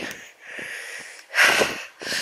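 A walker's breathing picked up close to the microphone: a softer breath, then a louder rushing breath of about half a second near the end, between spoken sentences.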